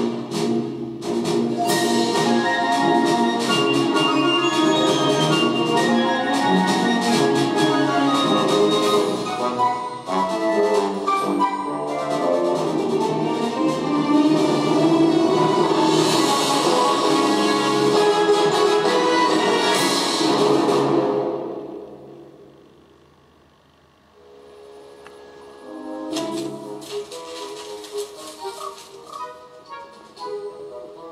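Orchestral film music playing through ThePiHut's small single-driver portable speaker, with little deep bass. About 21 seconds in the music fades down, then quieter music returns a few seconds later.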